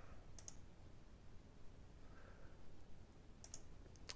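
Faint computer mouse clicks over near silence: a pair about half a second in and another pair near the end.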